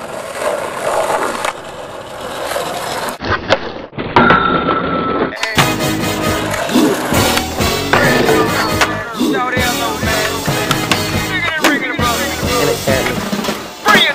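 Skateboard wheels rolling on concrete for about the first three seconds. After a brief break, music plays from about five seconds in.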